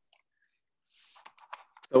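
Near silence, then about a second in a short run of faint, quick computer mouse clicks, with a voice starting right at the end.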